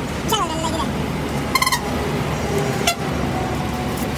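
Steady low rumble of a road vehicle heard from inside while it is moving. There is a brief voice just after the start, a short buzzy burst about halfway through and a sharp click near the end.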